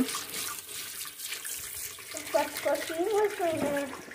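Water running from the tap into a shampoo bowl sink as a child's hands are rinsed off. A voice comes in over the water about halfway through.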